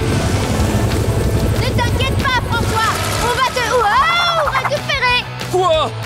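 Cartoon helicopter sound effect, a steady low rotor drone, under background music. From about two seconds in, wordless high gliding calls are heard over it.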